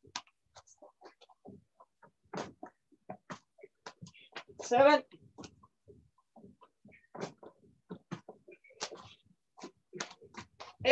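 Scattered short knocks and taps from a man doing a fast squatting drill on a judo mat. About halfway through comes one loud, short shout from him, in step with the rep count he calls out every few seconds.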